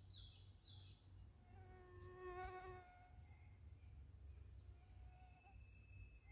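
Near-silent woodland with a fly buzzing past for about a second, roughly two seconds in. A few faint, short high chirps come near the start.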